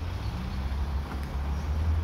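Outdoor car-park ambience: a steady low rumble of road traffic.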